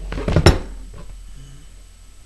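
A short clatter of sharp knocks and clicks, loudest about half a second in, then fading away.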